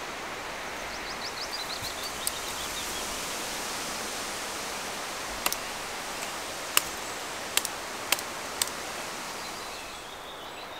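Steady wind rushing through the forest trees, with about five sharp knife cuts on a wooden pole in the second half.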